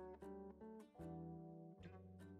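Faint background music: a guitar playing separate plucked notes, a few a second.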